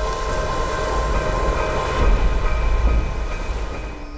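Wind buffeting the microphone in a deep, gusty rumble, under a held droning chord of background music. Both ease off slightly near the end.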